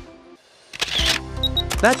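Camera shutter sound effect about a second in, followed by two short high beeps, over background music.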